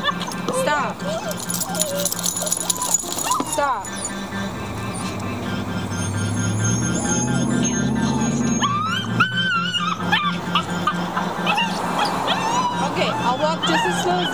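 Young puppy whining on a leash in many short, high cries that bend up and down in pitch, with music playing underneath.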